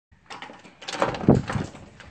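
Sliding patio door being slid open, with a short rattle and then about half a second of rumbling along its track.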